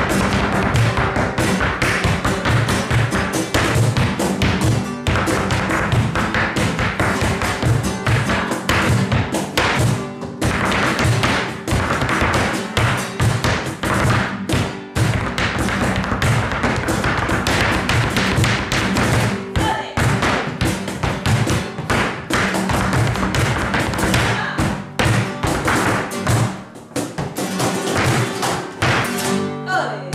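Flamenco music with rapid zapateado footwork: a dancer's shoes striking the floor in quick, dense taps over the music. The taps thin out briefly near the end.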